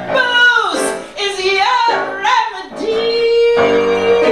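A woman singing live into a microphone with piano accompaniment: her voice glides through a phrase, then holds one long steady note near the end.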